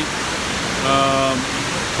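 Steady rush of water falling down the wall of the 9/11 Memorial reflecting pool. About a second in, a man's voice holds one steady note for about half a second.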